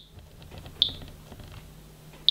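Radiation Alert Ranger Geiger counter giving a single short, high chirp about a second in: one detected count, back near background as the meter moves away from the uranium-bearing autunite. Soft handling clicks come from the meter before the chirp.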